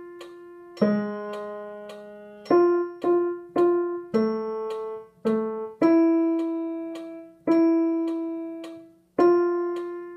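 Roland digital piano playing a simple, slow tune in three-four time: notes struck, mostly a low note under a melody note, and held to fade, with a new bar about every 1.7 seconds.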